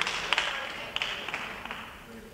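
Congregation applauding, the clapping thinning and dying away over the two seconds.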